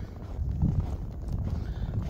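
Wind buffeting the microphone in a snowstorm, an uneven low rumble, with footsteps crunching in snow.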